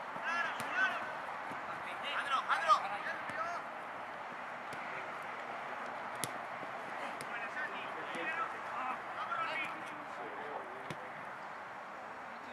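Distant shouting of players calling out across an outdoor football pitch during play, in several short bursts over steady open-air background noise, with one sharp knock about six seconds in.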